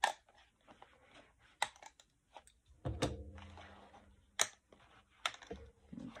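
Metal binder clips being unclipped from a journal's pages and set down on a cutting mat: about five sharp clicks, a second or so apart, with light paper handling.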